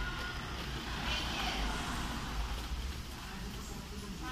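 Steady low background rumble, like distant traffic, with faint voices in the distance and no distinct work sounds.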